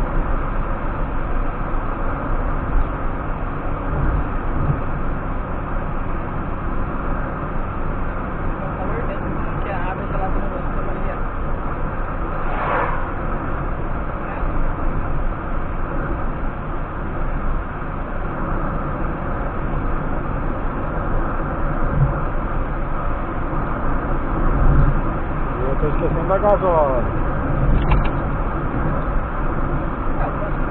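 Steady road and engine noise of a car cruising on a highway, heard from inside the cabin, with a few low thumps from the road.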